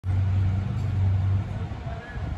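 Vehicle engine running: a low steady hum that drops away about one and a half seconds in.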